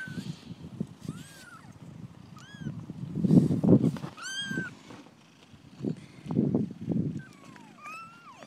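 Newborn kittens mewing: about five short, thin, high mews, with a longer, steadier one about four and a half seconds in. Low rustling and rubbing from fur brushing against the phone is loudest about three to four seconds in.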